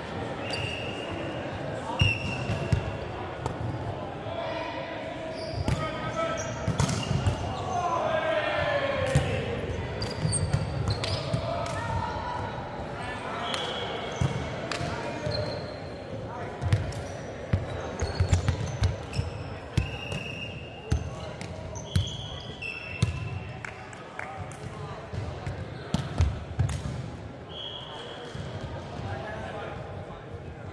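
Indoor volleyball being played on a hardwood court: the ball is struck and hits the floor with sharp smacks, and sneakers give short squeaks on the wood, with players' voices in the background.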